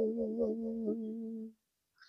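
A woman humming one steady low note through pursed lips, wavering slightly, which stops about one and a half seconds in. It is a vocal sound-and-vibration exercise meant to release tension.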